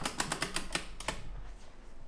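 Torque wrench clicking as it is handled: a quick run of about a dozen sharp metallic clicks in the first second.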